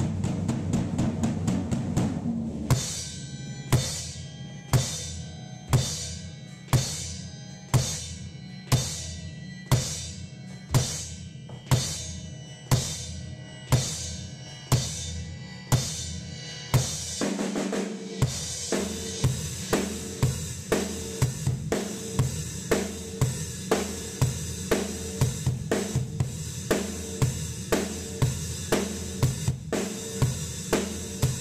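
Rock band playing live in the room: electric bass with a drum kit. The drums strike heavy accented hits about once a second, then break into a full, faster beat with steady cymbals about eighteen seconds in.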